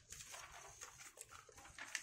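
Faint, irregular rustling of a sheet of paper being turned over and pressed flat on a stone countertop.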